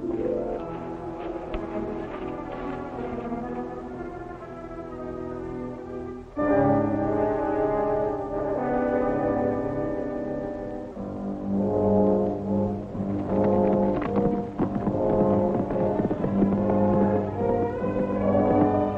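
Dramatic orchestral background score with brass playing sustained chords. It swells louder about six seconds in, and in its last third a quick rhythmic pulse drives it on.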